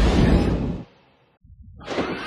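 Film trailer sound design: a loud, rumbling din with a heavy low end cuts out abruptly just under a second in. It is followed by a moment of near silence, then a rising swell that builds back in near the end.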